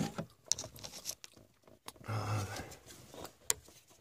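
Scattered light metallic clicks and scrapes as a mounting bolt is fitted by hand to a car's steering column bracket.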